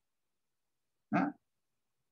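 Silence broken by a single short questioning syllable, 'É?', from a man about a second in.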